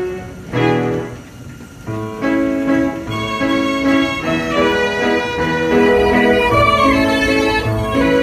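Self-playing violin and piano machine performing a tune: mechanically bowed violins playing sustained notes over a roll-driven piano, with a brief quieter passage about a second in.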